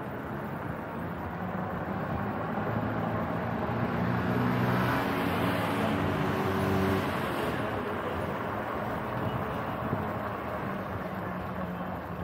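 Wind and tyre noise of a bicycle ride on a city street, with a motor vehicle's engine swelling in the middle and fading away.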